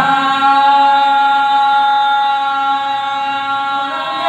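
A man singing one long held note in golla chaduvu, a Telugu folk recitation. His voice stays at a steady pitch, chant-like and unaccompanied.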